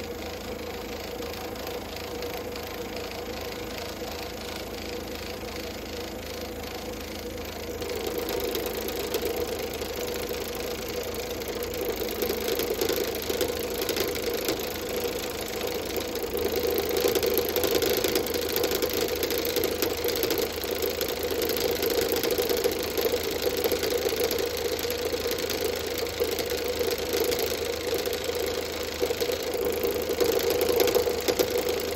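Wood lathe running steadily with the Sorby RS-3000 ornamental turning device's vibrating cutting head working into a spinning piece of very dry big leaf maple. About eight seconds in the sound turns louder and denser as the cutter bites in and cuts decorative grooves. It is picked up through a camera mounted on the lathe itself.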